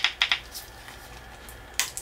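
Fingers working at the tamper-proof plastic seal of a body-lotion container: a few quick clicks in the first half second, then a quiet stretch and one more click near the end.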